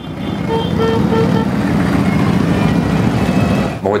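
A large pack of motorcycles on a group ride, engines running together in a dense, steady low sound, with three short horn toots about a second in.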